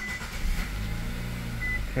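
Nissan Rogue Sport's engine starting and settling into a steady idle, with two short high beeps, one at the start and one near the end.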